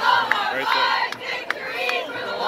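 A squad of cheerleaders shouting a cheer in unison, with sharp claps at a regular beat of about two or three a second.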